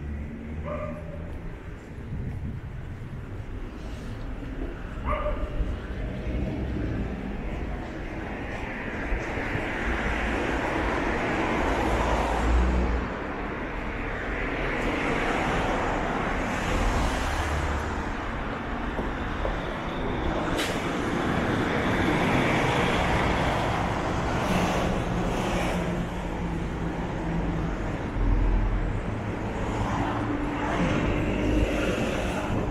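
Road traffic on a city street: vehicles passing in waves of engine and tyre noise, swelling from about eight seconds in. Two short higher-pitched calls sound in the first few seconds.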